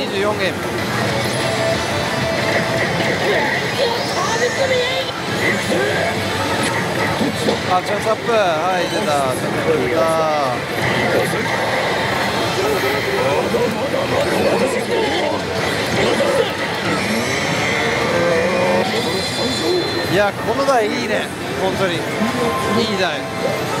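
Pachislot machine (Oshi! Salaryman Banchou) playing its music, effects and animated characters' voice lines over the steady din of a busy pachinko parlor.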